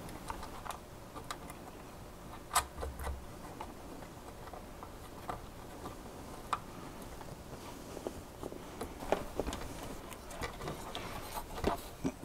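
Scattered light clicks and taps of small hardware being handled: nuts threaded finger-tight onto CPU-cooler mounting standoffs, with the metal support bracket shifting on the motherboard. The clicks come irregularly, a few seconds apart, the loudest about two and a half seconds in.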